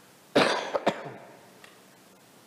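A man clearing his throat: two rough bursts about half a second apart, the first the longer and louder.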